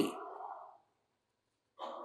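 A man's voice trailing off into a soft breathy exhale at the end of a phrase, then quiet, then a short intake of breath near the end before he speaks again.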